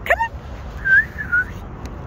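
A person whistling two short notes to call a dog, the second note sliding down in pitch.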